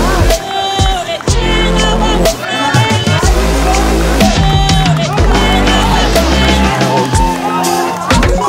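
Background music: a loud track with a heavy, sustained bass line and a singing voice over it.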